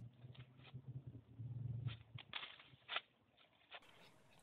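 Faint rustle of leaves and a few soft clicks from the twigs and stems of a shrub as a flower is picked off it, with a brief low murmur about a second and a half in.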